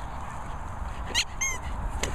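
Small dog giving two short, high-pitched yips a little over a second in, close together.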